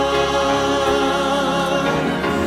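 Choir singing a worship song with a lead male voice, accompanied by piano and orchestra, on sustained notes.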